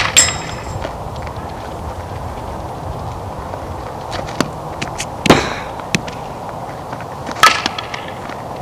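A fastpitch softball bat striking the ball three times: sharp, ringing pings right at the start, about five seconds in, and near the end, the first with a high ring after the hit.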